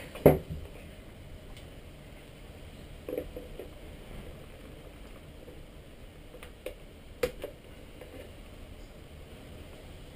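Hand handling of a plastic radio-control transmitter as its battery lead plug is worked loose: a knock just after the start, then a few light clicks and taps over quiet fiddling.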